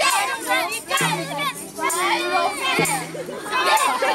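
A group of children and adults singing and chanting a camp action song together, many voices at once with shouts mixed in.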